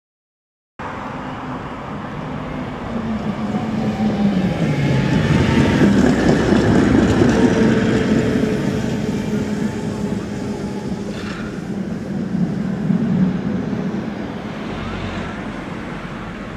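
Tram passing close by on street rails: its running noise swells to a peak about seven seconds in and then fades as it moves away. A motor whine glides down in pitch as it approaches. The sound cuts in abruptly just under a second in.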